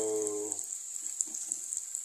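Minced garlic and ginger sizzling in hot oil in an electric grill pan: a steady high hiss with small crackles and pops.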